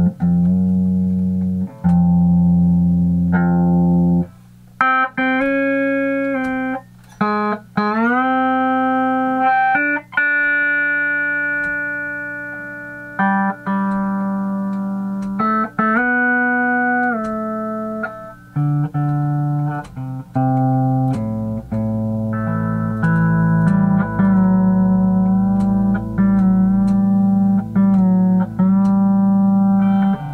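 Pedal steel guitar, a vintage MSA D12, played on its C6 neck: picked chords ring out and pedals bend notes smoothly up and down in pitch, with a few short pauses between phrases.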